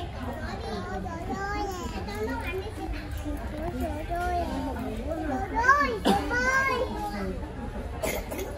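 A toddler babbling and vocalising without clear words, with other voices, and a higher-pitched excited call about six seconds in, over a steady low background hum.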